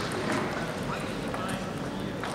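Scattered sharp clicks of table tennis balls hitting tables and bats, over a background murmur of voices echoing in a large sports hall.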